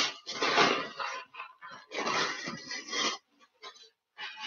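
A plastic bag crinkling and rustling as it is handled and lifted, in two bursts of about a second each, then a few faint crackles near the end.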